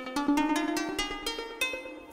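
Plucked synth lead sound from a Native Instruments Maschine MK3, played on its pads in keyboard mode as a quick run of about ten single notes, each one sharp at the start and quick to fade. The notes are held to the hardware's chosen scale so they stay in key.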